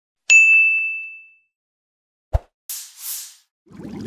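Subscribe-button animation sound effects: a bright bell-like notification ding that rings out and fades over about a second, then a single sharp click and two quick whooshes.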